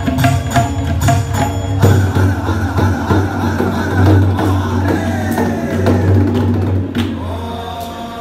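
Tabla being played: quick strokes on the tuned right-hand dayan over the deep bass of the left-hand bayan. The strokes are evenly spaced at first, become dense and fast after about two seconds, and thin out near the end.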